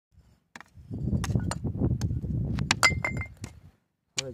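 Rock fragments clinking and knocking against rock in a quick irregular series, one strike ringing briefly with a clear tone, over a low rumble.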